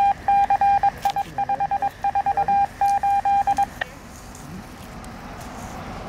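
Radio scanner sending a single steady beep tone keyed on and off in a Morse-code pattern of short and long beeps for nearly four seconds, ending with a click. This is the kind of Morse station ID a police radio repeater transmits.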